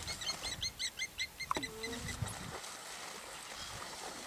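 African wild dogs twittering: a quick run of high, bird-like chirps, about eight a second, for the first second and a half, then one call sliding down in pitch.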